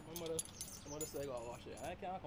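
A bunch of keys jingling and clinking in a hand, with a quieter man's voice talking underneath.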